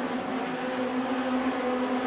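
Engines of Kajun Mini Stock race cars running together at racing speed: a steady drone that holds its pitch.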